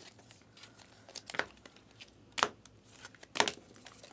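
Trading cards in plastic sleeves and rigid top loaders being handled and shuffled through, with a faint crinkling rustle and a few short sharp plastic clicks spread through.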